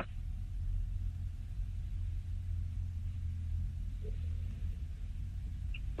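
A steady low rumble of background noise, with no other clear sound over it.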